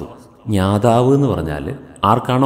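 Only speech: a man narrating in Malayalam, one phrase beginning about half a second in after a short pause.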